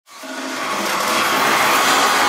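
Loud live pop music from an arena sound system, heard from the audience, fading in over the first half second.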